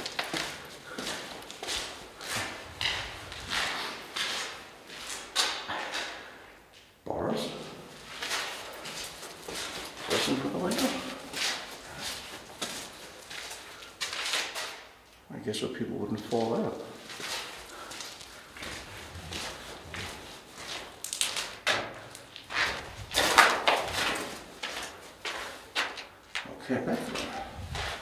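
Footsteps and scuffs of someone walking on gritty concrete floors and stone stairs, irregular, with brief pauses about a quarter and halfway through.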